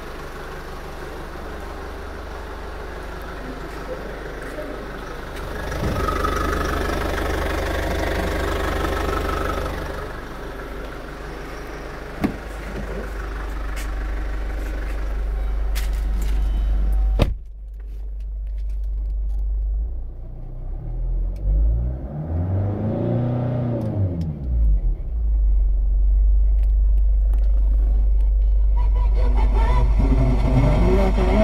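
2005 Kia Sportage engine idling steadily with a low rumble, heard from outside the vehicle; about seventeen seconds in a door shuts with a sharp clack and the sound becomes muffled, as if heard from inside the cabin. Then the engine is revved, its pitch rising and falling twice over a few seconds, before settling back to idle.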